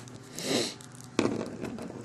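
A small plastic action figure being handled: its joints click and fingers rub on the plastic, with one sharp click a little over a second in and smaller clicks after it.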